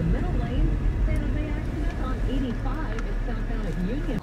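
A radio announcer talking over the car radio, heard inside the vehicle's cabin over the steady low rumble of its running engine.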